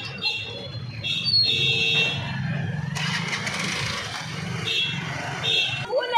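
Motorcycle and car engines running in a crowded street, a low steady hum throughout, with several short high-pitched tones heard over it and a noisy stretch of crowd sound around the middle.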